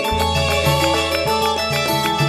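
Live campursari band playing an instrumental passage: melody notes over changing bass notes and a steady percussion beat, with no singing.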